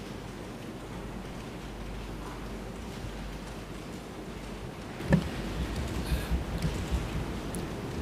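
Steady hiss and low mains hum of an open courtroom microphone feed, broken by a single knock about five seconds in, followed by soft irregular low bumps of handling or movement.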